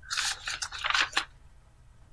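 Scratchy rustling handling noise close to a microphone, a cluster of short scrapes and rubs in the first second or so that then dies away.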